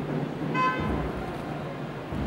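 A single brief, high-pitched toot about half a second in, over a steady low murmur and rumble of a crowd in a large room.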